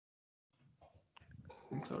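Dead silence for about half a second, as on a video call whose noise suppression has cut the line. Then come faint muffled sounds with a short click, and a man's voice starts near the end.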